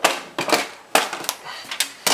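Plastic snap clips of an Asus G74SX laptop's bottom access cover clicking loose as the cover is pried off. There are about five sharp clicks and knocks, roughly every half second.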